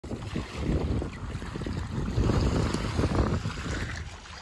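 Wind buffeting the microphone in uneven gusts, with small waves lapping at the lake shore.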